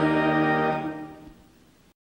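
Recorded sacred choral music ending on a held chord that fades out about a second in.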